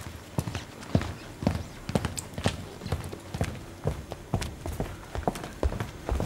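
A steady series of hard knocks in a clip-clop rhythm, about two a second.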